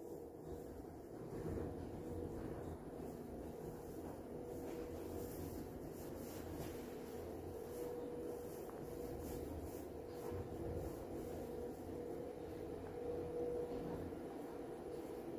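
Hyundai elevator car travelling upward: a faint, steady hum and rumble of the moving car with a thin, steady mid-pitched whine from the drive.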